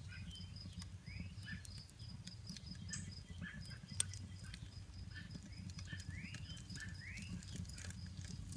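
Faint crackling and ticking from the burning charcoal under the pizza stone, with one sharper pop about four seconds in, over a low rumble. Birds chirp briefly in the background a few times.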